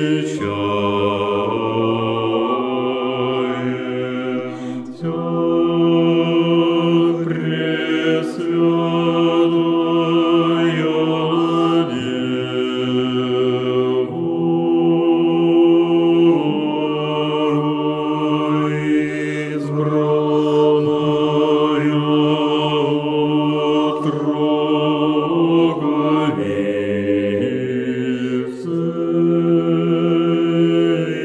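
A church choir singing Orthodox liturgical chant in several-part harmony, in long held chords that change every few seconds.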